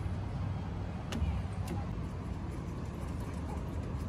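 Steady low rumble of a car on a nearby road, swelling slightly about a second in, with a faint click or two.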